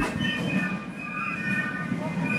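Piccolos of a Basel Fasnacht clique playing a tune in high, held notes, several pipes together, without drums.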